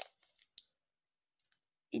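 Plastic Skewb puzzle cube being turned by hand: one sharp click as a face snaps round, then a few faint clicks, mostly quiet between them.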